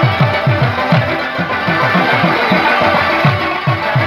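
Instrumental passage of Pashto folk music with no singing: a harmonium playing sustained notes over a fast, steady hand-drum rhythm, about four to five low strokes a second, each bending downward in pitch.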